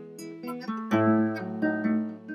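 Background music: an acoustic guitar picking single plucked notes, with a deeper low note joining about a second in.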